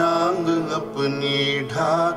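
Male voices singing a slow, melodic Hindi song, holding long notes that bend in pitch, over a steady lower tone.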